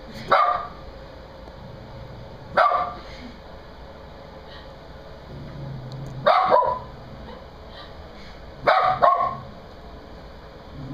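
Small white curly-coated dog barking at a portrait it is frightened of: about six sharp barks a few seconds apart, the later ones coming in pairs.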